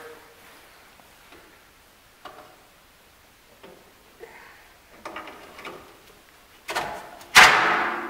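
Light clinks of a long pry bar against a Corvette's front suspension, then near the end a loud sudden metal pop as the joint lets go under the load of the compressed coil spring.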